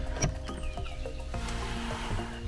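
Background music with sustained notes. A single short click about a quarter second in comes from the metal lever handle and latch of a glazed door being worked.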